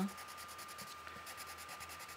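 Faint scratching of an orange coloured pencil on a paper worksheet as digits are marked over.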